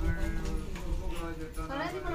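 Indistinct background voices with a melodic, sing-song line rising and falling near the end, over a steady low rumble.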